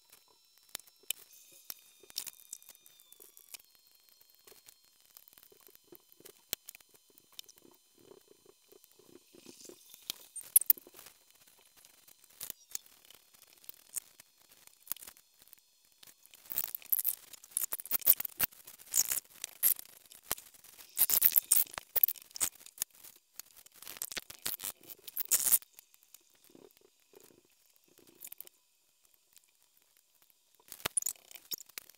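A scraper blade scraping softened, alcohol-soaked glue residue off LCD glass. Light scattered clicks and taps give way, about halfway through, to a run of quick repeated scraping strokes that stops abruptly near the end.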